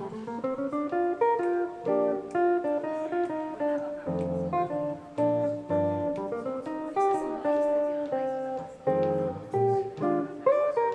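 Jazz guitar solo on a semi-hollow electric guitar played through a small amplifier: plucked single-note melody lines broken up by chords with low bass notes.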